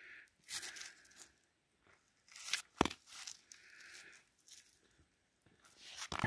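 Faint handling noise from a work-gloved hand gripping a rock sample: scattered short scuffs and crunches, with one sharp click about halfway through.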